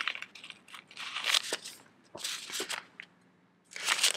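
Paper sticker sheet of dot washi stickers rustling and crinkling as it is handled and dots are picked off with tweezers. It comes in a few short bursts, with a pause of about a second near the end.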